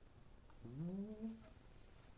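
A single short, faint vocal sound about half a second in. It rises in pitch and then holds briefly before stopping, in an otherwise quiet room.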